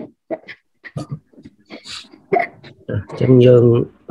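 Speech only: short broken voice sounds and breaths, then a man's voice starting a steady recitation about three seconds in.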